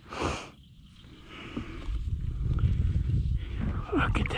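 Kayak paddling: a brief splash of the paddle blade in the water in the first half-second, then a low rumble of wind on the microphone that builds after about two seconds.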